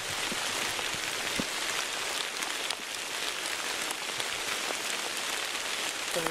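Steady rain falling on wet leaves and forest floor, with a few sharper drop ticks.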